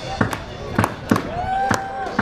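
Sharp, irregular drum hits from a live band's drum kit, with the bass dropped out, as a rock song winds down, and a voice whooping or holding a note near the end.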